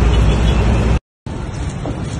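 Steady city street traffic noise with a heavy low rumble, recorded on a phone. It cuts off abruptly about a second in, and after a brief silence quieter outdoor noise follows.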